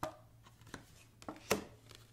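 Tarot cards being handled: a few short, soft clicks and taps as the cards are shifted between the fingers and against the deck, the sharpest a little past halfway.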